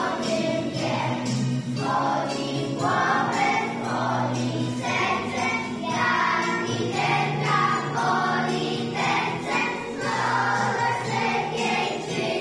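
A group of young children singing together in unison over instrumental backing music with a light jingling percussion.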